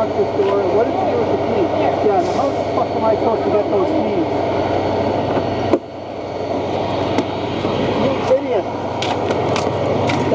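Indistinct overlapping chatter of several people over a steady low rumble. The sound breaks off abruptly about six seconds in, like a cut in the recording, and the chatter then builds again, with a few sharp clicks near the end.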